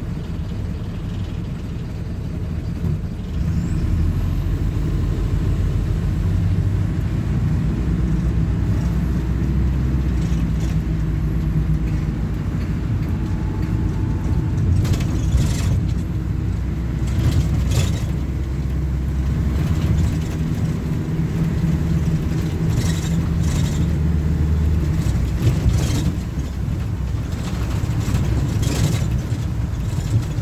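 Plaxton Beaver 2 minibus's diesel engine heard from inside the saloon, ticking over and then pulling away about three and a half seconds in, working up to road speed and running on steadily. Short knocks and rattles come through from about halfway.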